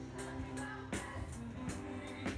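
Live band music: electronic keyboards holding steady chords, with drum-kit strikes and a cymbal hit just under a second in.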